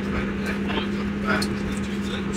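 Steady running noise inside a passenger train carriage, with a constant low hum.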